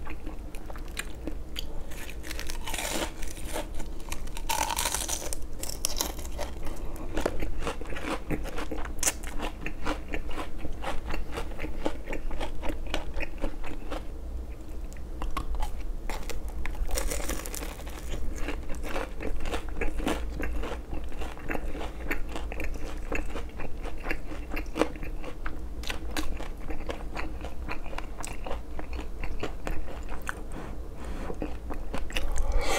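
Close-up crunching and chewing of crisp deep-fried Korean twigim (battered shrimp and vegetable fritters), with loud crackly bites about three, five and seventeen seconds in, and steady wet chewing between them.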